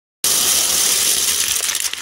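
A large heap of loose plastic LEGO bricks clattering as they are poured out: a dense rattle that starts suddenly and thins into separate clicks of single bricks settling near the end.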